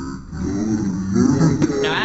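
Teenage boys' voices groaning and laughing just after a popsicle-stick truss bridge has broken under load. Near the end a clearer male voice cuts in.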